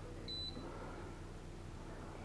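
A single short, high electronic beep from the air fryer's control panel as a button is pressed to set it, over faint room tone.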